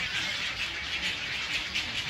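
A nesting colony of egrets: a steady, dense din of many birds calling at once, sitting mostly in the upper range.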